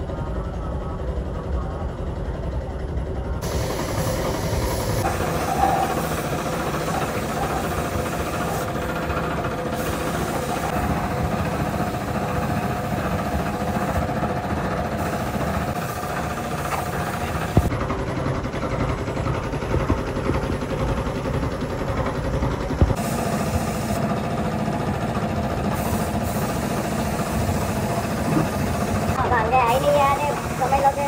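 Steady running noise of workshop machinery with a low hum, under the hiss of a compressed-air spray gun painting cast-metal sewing-machine bodies.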